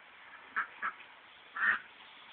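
Duck quacking three times: two short quacks just after half a second in, then a longer, louder quack near the end.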